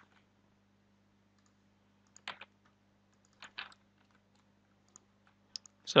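A few faint, scattered clicks of a computer mouse and keyboard, mostly in pairs a second or so apart, over a faint steady low hum.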